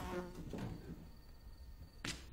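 Faint buzzing of a housefly.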